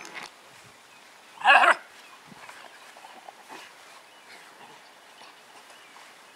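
A dog barks once, a single short bark about a second and a half in, over faint outdoor background noise.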